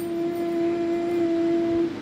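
A woman's voice holding one long sung or hummed note at a steady pitch, which stops near the end.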